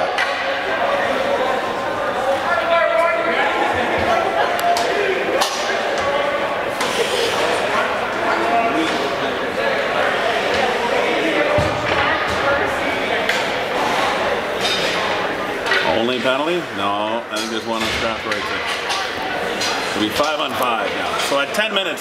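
Overlapping voices of players and spectators talking and calling out, echoing in a hockey arena, with occasional sharp knocks from the rink.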